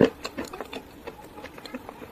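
A person chewing a crunchy food close to the microphone: one loud crunch at the start, then a quick run of small crackling crunches that thin out over the next second and a half.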